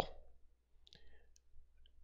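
Near silence with a few faint clicks, the clearest about a second in.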